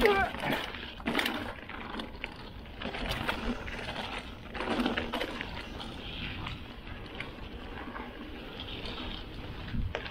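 Mountain bike rolling fast down a rough, rutted dirt singletrack: steady tyre noise over dirt and stones with frequent knocks and rattles from the bike, some louder clattering patches, and wind on the microphone. A short voiced groan from the rider right at the start.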